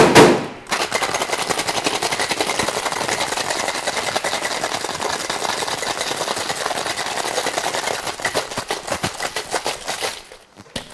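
Ice rattling hard inside a metal cocktail shaker during a vigorous shake, a fast, even clatter that runs on for about nine seconds. It opens with a loud metallic knock as the shaker is closed.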